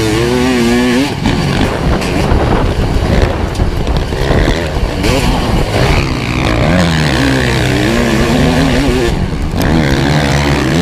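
Kawasaki KX500's two-stroke single-cylinder engine run hard in a motocross race, its note climbing and dropping over and over as the throttle is opened and rolled off through the corners.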